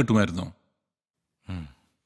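Film dialogue: a man's voice ends about half a second in. After a second of dead silence comes a brief, quieter breathy vocal sound, and then speech resumes.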